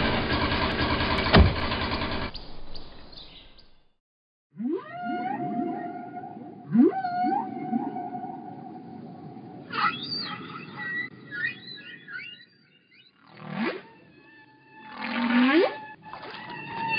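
Loud machinery noise with a heavy thump, fading out after about two seconds, then, after a short silence, a series of whale song calls: long upward-sweeping moans and higher wavering cries over a low hum.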